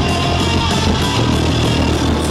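Live rock band playing loud, with electric guitars and drums.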